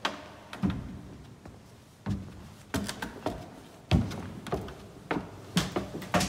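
Footsteps and knocks on wooden steps and a wooden access door: a series of about a dozen irregular thuds, the loudest one right at the start.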